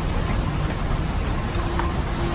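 Steady rain falling, an even hiss of drops with no break.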